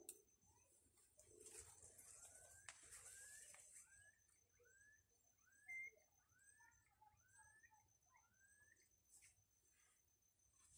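Faint background bird calls: a run of short, rising whistled notes, a little over one a second.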